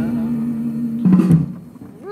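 Closing bars of a recorded comic song: a held note, then a final chord about a second in that dies away.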